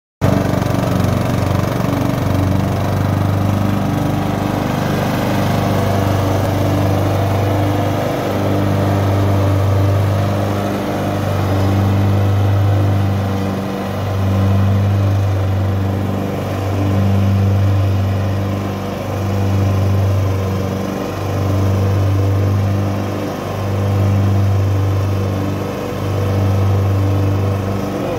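Husqvarna riding lawn mower running at a steady speed while cutting grass: one constant low engine hum that swells and dips every two to three seconds.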